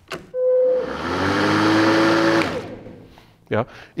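Makita DLM432 36-volt cordless lawn mower, running on two 18 V batteries, starting up. A short steady tone comes as it switches on, then the blade motor winds up to a steady whir for about a second and a half, then spins down and stops. It starts because both batteries are now fitted; on one battery it would not run.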